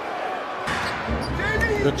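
Basketball being dribbled on a hardwood arena court, with arena crowd noise beneath; the sound comes in abruptly about a third of the way in.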